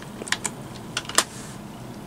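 Computer keyboard keys clicking as a short word is typed: a handful of separate keystrokes, the loudest about a second in.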